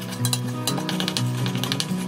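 Background music, over a quick run of clicks and scrapes from a spoon working in a stainless steel saucepan as porridge is stirred and scooped out.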